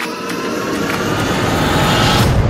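A rushing noise that swells steadily louder and merges into the sound of whitewater rapids near the end.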